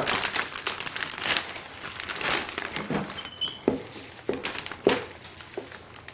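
Large plastic Ziploc freezer bag crinkling and rustling as it is handled and opened for seasoned ground sausage meat, with a few soft knocks past the middle as the meat is scooped in.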